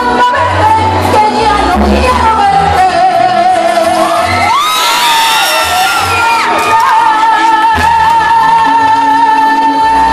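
Spanish-language song: a woman sings long, held notes over a band with a pulsing bass line, the voice sliding up and down through the middle before settling on one sustained note.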